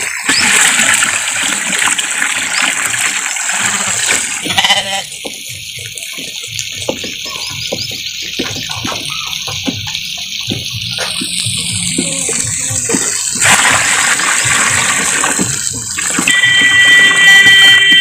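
Water poured from a plastic bucket into a plastic drum and stirred with a wooden pole, giving a steady splashing rush. A brief high-pitched call comes near the end.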